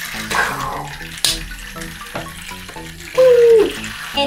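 Water splashing and sloshing in a toy pool as a small motorised toy boat is put into the water, with a couple of sharp plastic clicks, over steady background music. About three seconds in, a child's voice gives a loud, falling cry.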